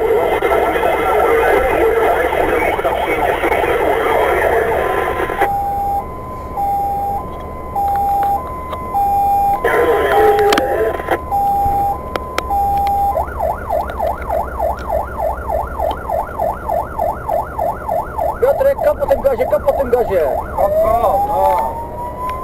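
Fire engine's electronic siren heard from inside the cab, switching through its modes: a rapidly wavering tone, then a two-tone hi-lo of about 0.7 s per note, then a fast yelp of about three sweeps a second, slowing into longer wails with a rising tone near the end.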